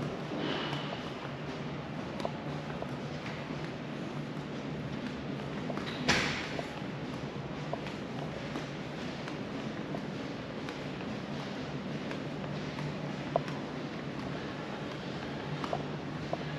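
Steady low hum of a large indoor hall, with faint footsteps and scattered clicks of a handheld camera being carried. There is a brief rustle about six seconds in.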